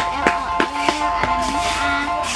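Background music with a steady beat: held synth-like chord tones over a regular tapping rhythm, about three beats a second.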